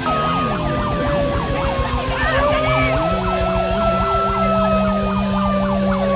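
A siren over a rock music track: one long wailing tone that slowly rises and falls, with a fast up-and-down yelping sweep repeating over it, while steady low notes and a beat carry on underneath.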